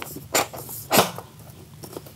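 Aluminum track cover being hand-pressed into the sill track of a Windoor 6000 aluminum sliding glass door: two sharp snaps as sections of the cover click into place, with a fainter click near the end.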